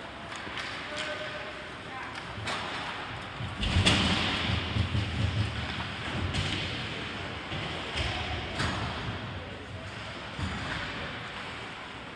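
Ice hockey play heard from the rink stands: sharp clacks of sticks and puck every couple of seconds, and a loud thud against the boards about four seconds in with a low rumble after it for about two seconds, over scattered voices.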